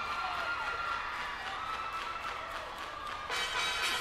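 Audience cheering over a music intro with a held note. The music grows fuller and louder shortly before the end.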